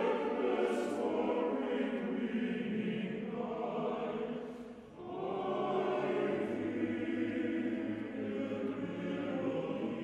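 Male choir singing held chords, with a short break in the sound just before five seconds in, after which the singing resumes with a deeper bass line.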